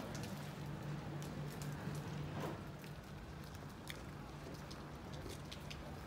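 Outdoor ambience in light rain: an even wash of rain noise with scattered sharp ticks and a low steady hum underneath.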